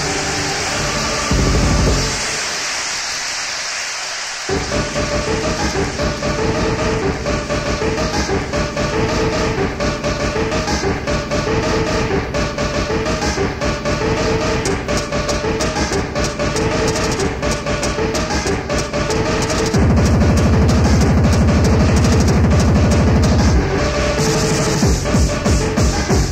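Hardcore techno (gabba) DJ mix played back from a 1994 cassette tape. The fast kick drops out briefly and comes back about four and a half seconds in. Near the end a heavier, louder bass comes in under the beat.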